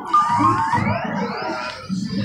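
Electronic arcade-machine music: synthesized tones with several rising sweeps, over a low, steady background din.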